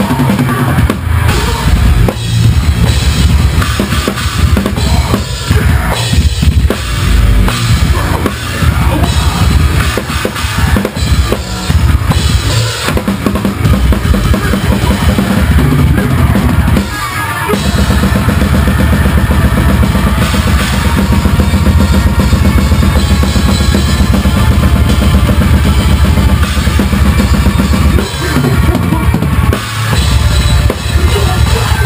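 Live metal band playing, heard from over the drum kit so the drums dominate: fast, heavy kick drum and crashing cymbals under distorted guitars. A short break a little past halfway, then a steady, dense run of kick drum to the end.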